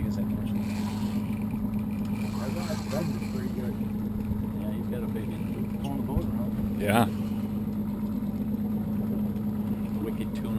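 Boat's outboard engine idling with a steady low hum while a fish is fought on a rod, faint voices over it, and a brief louder sound about seven seconds in.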